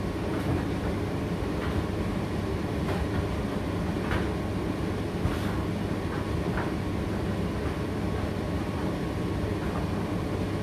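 Indesit IDC8T3 condenser tumble dryer running mid-cycle: a steady rumbling hum from the motor, fan and turning drum, with a few light knocks scattered through it.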